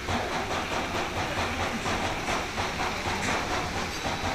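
Model train running on its track, clicking steadily over the rail joints at about three to four clicks a second.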